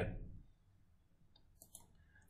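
A few faint, sharp clicks about a second and a half in, from a mouse or pointer selecting an on-screen menu option as the whiteboard is cleared; otherwise near silence.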